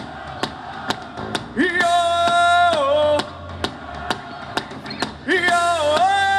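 Rock band playing live: the lead singer holds two long sung notes over electric guitar and a steady drum beat of about two strokes a second.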